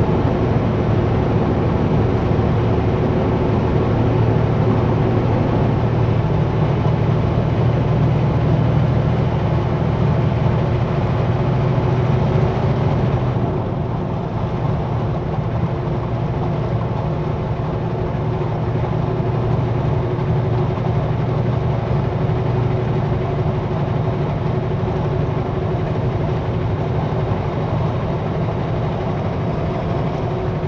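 Kenworth W900L semi truck driving at highway speed: a steady diesel engine drone under tyre and road noise. About halfway through the sound turns duller and a little quieter.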